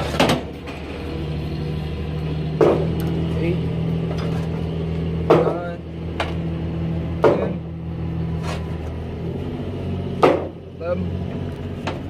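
A steady low engine hum, like a truck idling, with a sharp knock or clank every two to three seconds, about five in all, as strapping gear is dug out from under a flatbed trailer deck.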